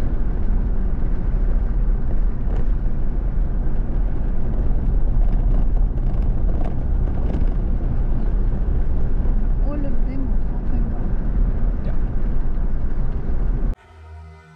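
Steady low rumble of road and engine noise inside a moving 4x4's cabin on a tarred road. It cuts off suddenly just before the end.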